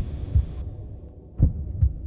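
Heartbeat sound effect: two low double thumps (lub-dub), one at the start and one about a second and a half later, over a steady low hum.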